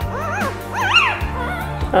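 Five-day-old petite Aussiedoodle puppy whimpering, two short high squeals that rise and fall, while held head-down for early neurological stimulation, over background music.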